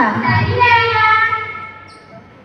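A young girl's voice singing into a microphone, holding a long note that fades away about one and a half seconds in.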